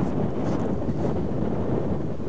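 Steady low road and engine noise of a car driving by, with wind buffeting the microphone.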